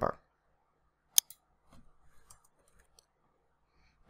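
A single sharp computer mouse click about a second in, which sets the spinner arrow in Word's Paragraph dialog to raise the Spacing After value, followed by a few faint soft ticks in near silence.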